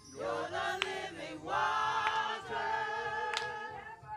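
Mixed gospel choir of men and women singing in long, held chords. Three sharp hand claps come at roughly even spacing.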